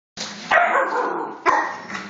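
Alaskan malamutes play-fighting and barking, with two loud barking outbursts about half a second in and again a second later.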